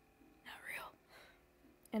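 A woman's soft breathy sound without voice, like a whispered breath, about half a second in during a pause in her talk, then the start of her speaking again at the very end.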